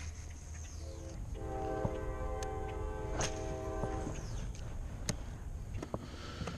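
Distant train horn sounding one held chord for about three seconds, fading in and cutting off.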